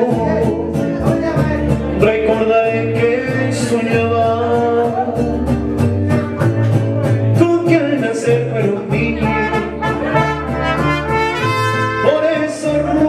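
Mariachi band playing: trumpets carry the melody over a steady strummed rhythm and a bass line.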